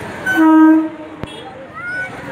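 Electric suburban train sounding one short, steady horn blast about half a second long, followed by a single sharp click.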